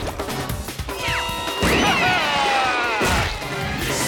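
Cartoon score music punctuated by crash and impact sound effects: three sharp hits, with sliding whistle-like tones that rise and fall about a second in.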